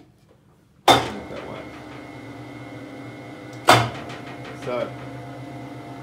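Electric drive of a rebar bending machine starting with a sharp metallic clunk about a second in, then running with a steady hum and a faint high whine; a second sharp clunk comes partway through while it keeps running.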